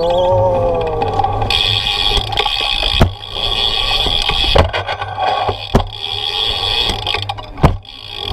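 BMX bike rolling over skatepark concrete, picked up by a GoPro mounted on the peg right by the wheel: steady tyre and frame rattle. A short whine rises and falls in the first second, and about four sharp knocks come later as the bike jolts over the ramps.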